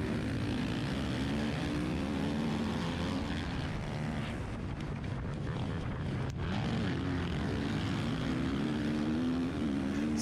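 KTM dirt bike engine accelerating hard off a motocross start, its pitch repeatedly climbing and dropping as it revs and shifts up, with the other dirt bikes of the pack running close by.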